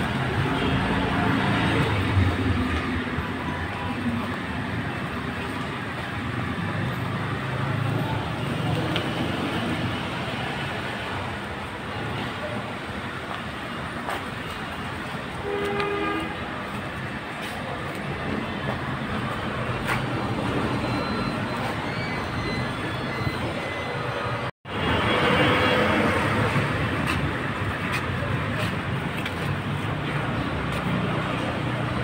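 Steady rumble of heavy vehicle noise, with a short horn-like tone a little past halfway. All sound cuts out for an instant about 25 seconds in.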